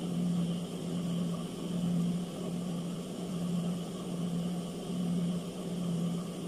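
Steady low electric motor hum from an idling industrial sewing machine, swelling and fading slightly about once a second.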